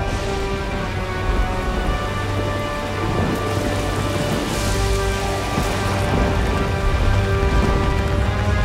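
Steady heavy rain falling and splashing on a hard floor, with slow music of long held notes underneath.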